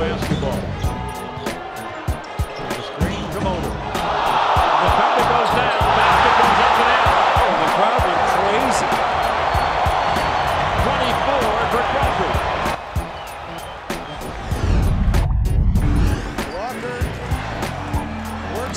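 Arena crowd cheering loudly for about nine seconds in the middle, over background music with a steady beat. A basketball bounces on the hardwood court before and after the cheering.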